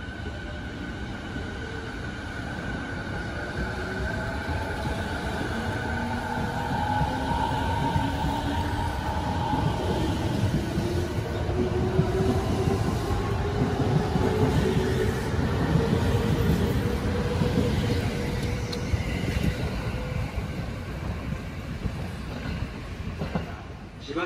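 JR 209 series electric commuter train pulling away and accelerating, its inverter-driven traction motors whining in several tones that climb steadily in pitch as it gathers speed, over a growing rumble of wheels on rail. It grows loudest about halfway through as the cars pass close by, then eases off.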